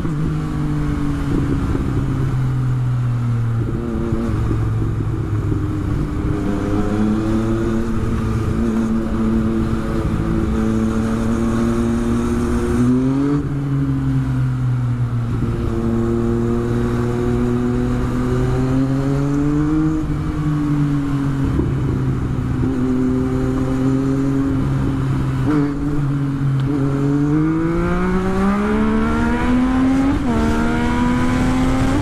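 Yamaha FZ-09's 847 cc inline-three engine running at steady cruising revs. The pitch dips and picks up again twice: a little under halfway and about two-thirds through. It then climbs steadily under hard acceleration near the end.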